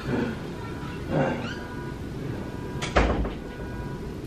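A few short, pitched cries near the start and about a second in, then a sharp knock about three seconds in, the loudest sound here, over a faint steady tone.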